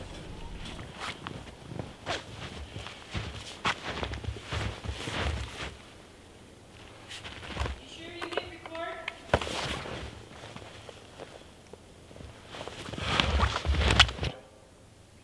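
Boots crunching through deep snow in irregular footsteps, loudest near the end as the walker comes close. A short pitched call sounds about eight seconds in.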